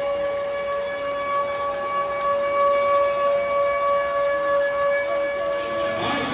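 One long horn-like tone held at a single pitch with a row of overtones, steady for several seconds and then fading out near the end, in the large echoing space of the arena.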